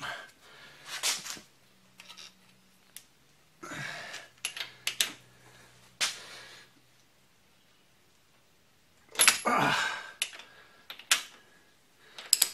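Scattered metal clicks and clinks of a hand wrench being fitted to and worked on the top cap of a Honda Shadow fork tube to loosen it, with a louder burst of handling noise about nine seconds in.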